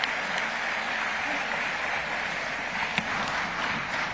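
Large audience applauding steadily, the clapping thinning a little near the end.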